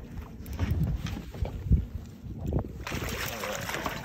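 A large halibut splashing and thrashing at the surface beside the boat as it is brought up and gaffed: a few low knocks, then a burst of splashing water starting about three seconds in.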